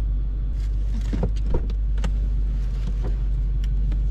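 Steady low rumble of a car running, heard from inside the cabin, with a few soft clicks and rustles of movement, the loudest about one and a half seconds in.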